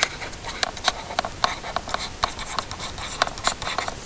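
A stylus writing by hand on a tablet screen: an irregular run of light ticks and short scratches as a word is written.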